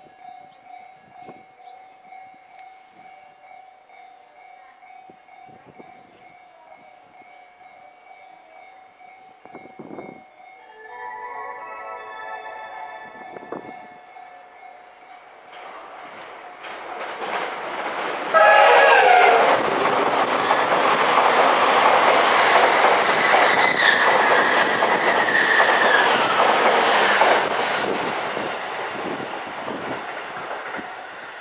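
Narita Express limited-express train approaching through the station: its horn sounds, loudest in a blast a little past halfway, over loud running and rail noise that builds up and then eases near the end.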